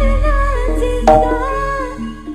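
Live Javanese gamelan music with a gliding vocal melody over struck pitched notes. A deep low boom rings out at the start and slowly fades.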